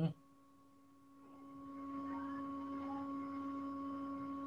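A steady humming tone with overtones that swells in a little after a second and then holds level.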